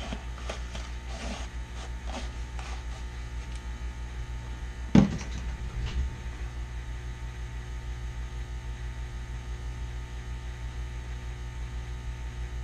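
Steady low electrical hum, with a sharp knock about five seconds in and a lighter knock a second later.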